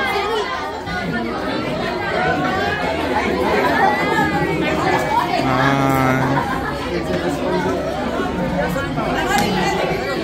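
Many students talking over one another: steady overlapping chatter with no single voice standing out.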